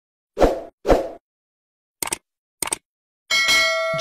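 Logo-animation sound effects: two thumps about half a second apart, two short clicks a little after two seconds in, then a ringing chime near the end.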